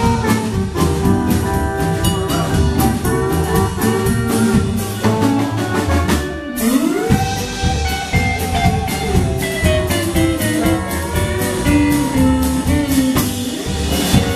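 Live country boogie band playing an instrumental break with no vocals: drums, electric guitar and keyboard, with a steel guitar sliding up about six and a half seconds in into long held, bending notes.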